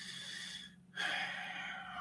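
A man breathing audibly close to the microphone: two long breaths, the second starting about a second in. A faint steady low hum runs underneath.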